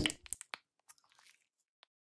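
The last word of a spoken phrase right at the start, a few faint clicks just after it, then silence.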